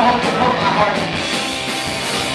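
A punk rock band playing live, with electric guitar and drums going at full volume.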